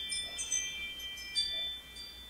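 Chimes ringing: a few light strikes leave several high metallic tones sounding together, fading toward the end.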